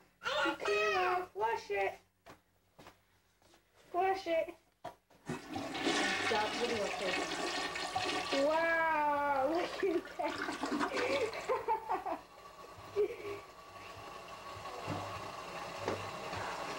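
A new toilet flushing. About five seconds in, water rushes loudly into the bowl and swirls down. After about six seconds it drops to a quieter, steady run of water.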